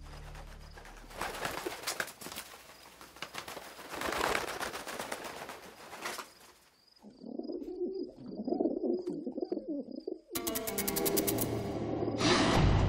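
A carrier pigeon beating its wings in a rapid flutter as it comes in to land, then cooing from about seven seconds in.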